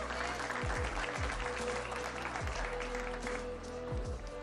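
Spectators applauding over venue music with a repeating bass beat; the clapping thins out a little after three seconds in.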